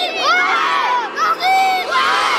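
A group of young children shouting and cheering together, many high voices overlapping at once.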